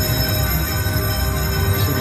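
Slot machine bonus-round music: sustained electronic tones and chimes, steady throughout, as the reels stop and the win meter counts up during the free games.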